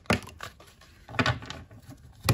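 Tarot cards being handled: a card is pulled from the deck and laid down on the spread, with two short slaps of card stock, one at the start and one about a second in.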